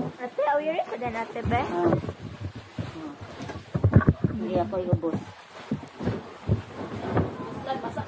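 People talking, among them a high-pitched child's voice, in short bursts with pauses.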